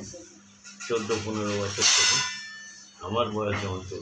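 Speech: a person talking in short phrases, with a brief hiss about two seconds in.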